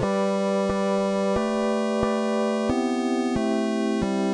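Software synthesizers playing a computer-generated chord progression and melody from MIDI, with a bright chiptune-style tone. Held notes change about every three-quarters of a second.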